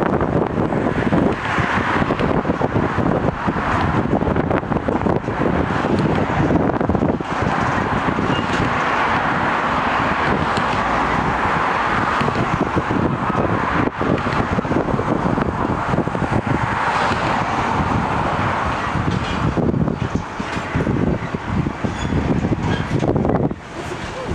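A freight train of hopper wagons rolling slowly along the yard tracks, a steady rumble of wheels on rail with wind buffeting the microphone.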